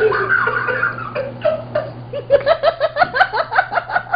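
A man laughing hard. From about two seconds in the laughter turns into a fast, high-pitched run of short laughs, about six a second.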